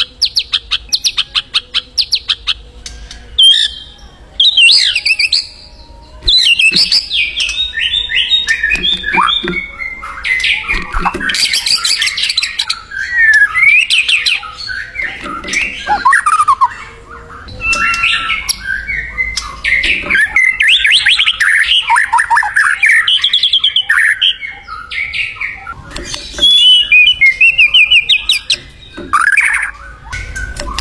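White-rumped shama (murai batu) singing a long, varied song: rapid trills, rising and falling whistles and chattering phrases, broken by short pauses. It opens with a fast rattling trill.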